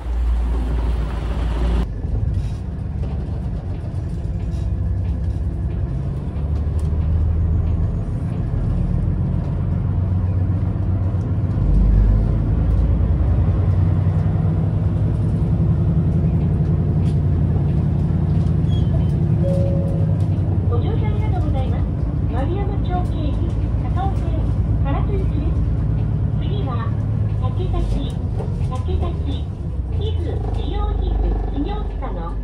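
City bus diesel engine running steadily as the bus moves off, heard from inside the cabin. A voice starts speaking about two-thirds of the way through.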